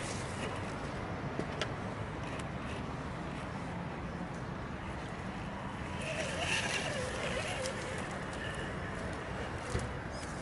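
Radio-controlled scale crawler with a Land Rover Defender body creeping slowly over leaf litter and grass: a steady low hum from its electric motor and geartrain, with small scattered crackles from the tyres on dry leaves.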